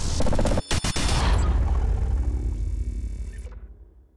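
Outro sound-effect sting for an animated logo: a loud, dense burst with a brief stuttering break about half a second in, then a low boom that fades out near the end.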